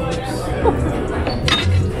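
Restaurant clatter: a sharp clink of metal or glassware about one and a half seconds in, over background music. A brief laugh comes at the very end.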